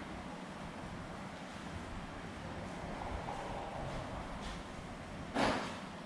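Steady low background rumble, with a single sharp thump about five and a half seconds in.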